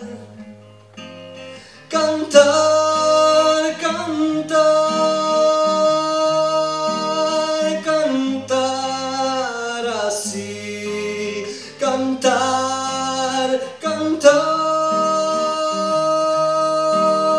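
A man singing long held notes with no clear words over a plucked acoustic guitar. The first two seconds are quieter, mostly guitar, and then the voice comes in with several sustained phrases.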